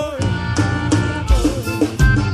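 Live forró band music, an instrumental stretch between sung lines, with a steady kick-drum beat under pitched melody instruments.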